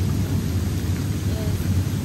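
Hot tub jets running, a steady low rumble of churning, bubbling water.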